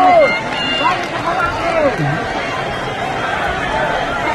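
Arena crowd of fight fans shouting and chattering, many voices overlapping. A long held shout slides down in pitch and breaks off just after the start, and shorter shouts rise out of the murmur after it.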